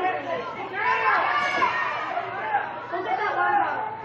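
Several people talking at once: overlapping chatter of spectators in the stands, no words clear.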